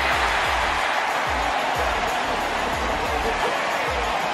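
Stadium crowd noise from a football broadcast, right after a long completion, mixed with background music with low bass thumps.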